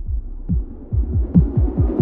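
Phonk hardstyle remix in a stripped-down breakdown: the full mix has dropped away, leaving a quieter, rapid run of low bass notes, each sliding down in pitch, about five a second.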